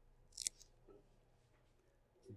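A faint, brief scratch of a marker tip on paper about half a second in, followed by a tiny tap.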